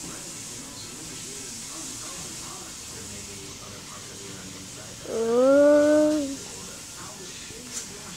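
A single drawn-out vocal call about five seconds in, rising at its start and then held steady for about a second, over a faint steady hiss.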